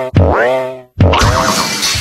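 Cartoon boing sound effects in a TV channel ident: two springy twangs about a second apart, each bending in pitch and then cut off sharply.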